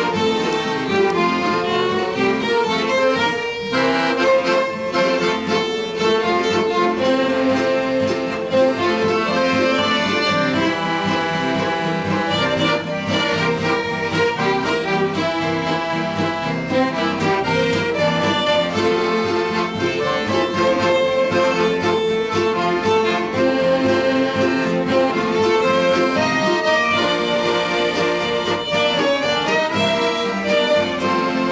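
A small acoustic folk band playing a polka: accordion carrying the melody with two fiddles, backed by rhythm guitar and mandolin, in a steady bouncing beat.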